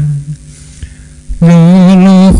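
Buddhist monks chanting in Pali on a steady, held note. The chant breaks off just after the start, leaving about a second of faint electrical hum, then resumes on a higher note.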